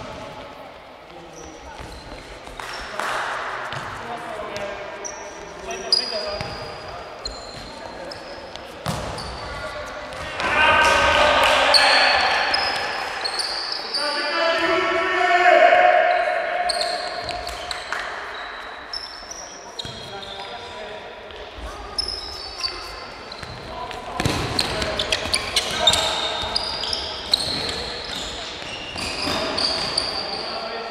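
Indoor futsal play in an echoing sports hall: the ball being kicked with sharp knocks, short high squeaks of sneakers on the court floor throughout, and players shouting to each other, loudest in the middle.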